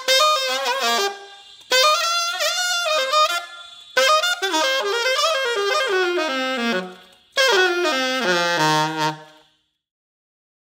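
Alto saxophone played through a Drake mouthpiece, four short melodic phrases with gaps between them. The last two phrases fall to low held notes before the sound stops about half a second before the end.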